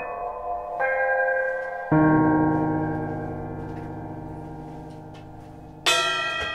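Keyboard playing slow chords: a full chord struck about two seconds in rings and fades slowly. A drum kit comes in just before the end.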